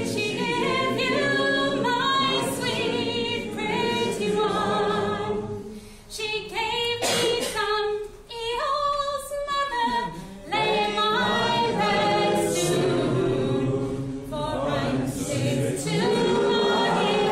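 Unaccompanied folk singing: a woman's voice leading a song with several voices singing along in chorus, phrase after phrase with brief breaths between lines.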